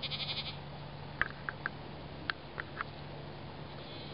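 A goat bleats once at the very start, a short quavering call, followed by a few short, sharp high ticks.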